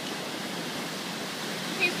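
Ocean surf breaking and washing up the beach, a steady rushing noise.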